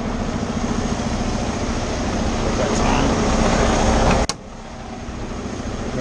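Semi-truck diesel engine idling steadily, with a sharp knock about four seconds in, after which the sound is quieter.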